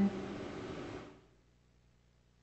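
A speaker's word ends right at the start and fades out in room echo over about a second, followed by near silence with a faint steady hum.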